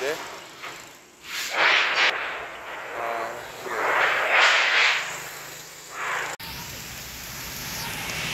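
Wind buffeting a phone microphone in two strong gusts, about a second and a half and four and a half seconds in, ahead of a rainstorm. After an abrupt cut, a steady hiss of wind and light rain follows.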